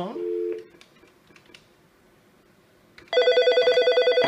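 A few faint clicks, then about three seconds in a Nortel T7316 desk phone starts ringing for an incoming call: a loud electronic ring that warbles rapidly, about a dozen pulses a second.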